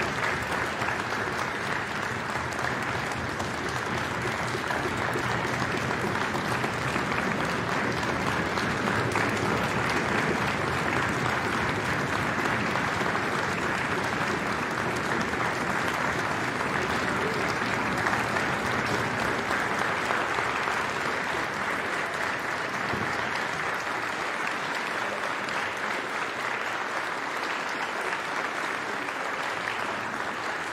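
Audience applauding: a dense, steady clapping that eases off slightly near the end.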